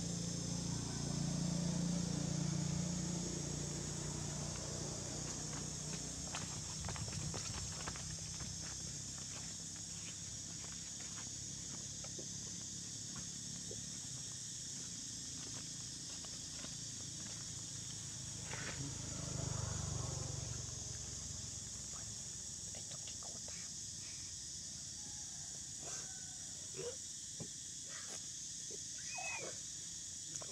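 A steady high insect drone with scattered light clicks. There is a low rumble in the first few seconds and again about twenty seconds in, and a few short squeaky calls, sliding up and down in pitch, come near the end.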